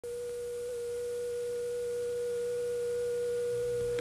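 A steady television test tone, a pure note held at one pitch with a faint higher overtone, of the kind a station broadcast with its test pattern before signing on.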